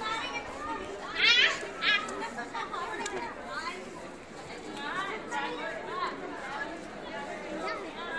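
Indistinct chatter of several people's voices, none close enough to make out, with one louder high-pitched voice calling out about a second in.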